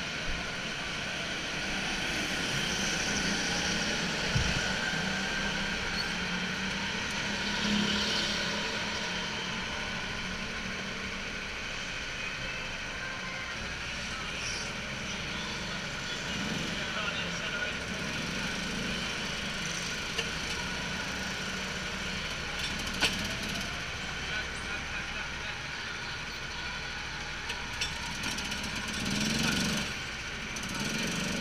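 Rental go-kart engines idling in a queue, a steady drone throughout, with indistinct voices over it.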